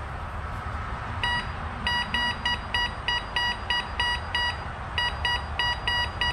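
Bounty Hunter Mach 1 metal detector giving its high-tone beep over and over as a silver quarter passes the coil, about three short beeps a second, starting about a second in, with a short break near the end. The high tone and the number four category mark a silver target.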